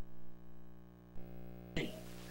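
A pause between a man's spoken prayer lines, filled by a steady low electrical hum; his voice starts again near the end.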